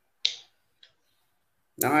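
One short, sharp click-like hiss about a quarter second in, with a much fainter one a little later, in an otherwise silent pause; a man's voice starts near the end.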